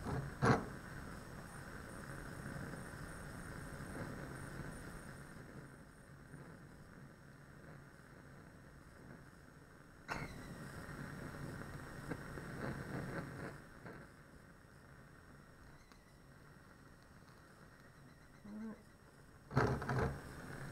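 Bunsen burner flame giving a steady rushing noise, with a sudden louder rush about halfway through that lasts a few seconds while magnesium ribbon burns in the flame.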